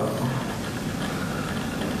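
Steady background room noise: an even hiss with a low hum underneath, and no speech.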